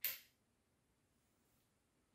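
A single sharp click as the magazine of a Diana Stormrider PCP air rifle snaps into its seat in the receiver, latching in place. The click dies away quickly.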